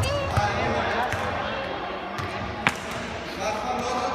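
A futsal ball being kicked and bouncing on a wooden sports-hall floor under children's voices, all echoing in the hall; one sharp, loud strike of the ball comes about two and a half seconds in.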